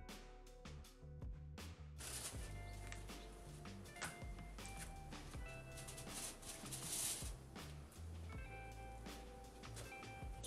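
Quiet background music with a changing bass line and held tones. From about two seconds in, a faint hiss of noise sits under it.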